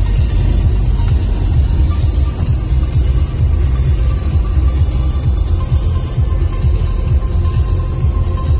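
Steady low rumble of road and wind noise inside a moving Mazda's cabin, with music playing faintly over it.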